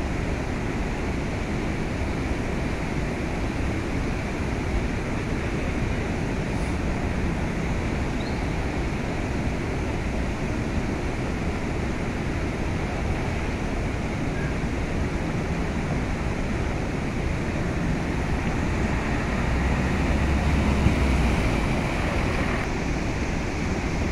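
Muddy floodwater rushing across a road and pouring over its edge: a steady roar of fast water. It swells a little, with a louder low rumble, about twenty seconds in.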